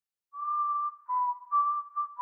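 A whistled melody: a single clear tone stepping back and forth between two close notes in short phrases, starting about a third of a second in.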